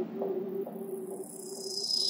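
Electronic music in a quiet breakdown: a steady synth note repeats in short pieces with faint clicks, while a high sweep begins slowly descending and the level starts to build again.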